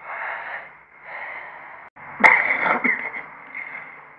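A man drawing deep, wheezing breaths, as if pulling cigarette smoke deep into his lungs. Two long, noisy breaths are followed by a sudden louder, rasping breath about two seconds in.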